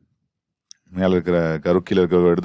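A man's voice speaking, resuming about a second in after a silent gap that is broken by a single brief, faint click.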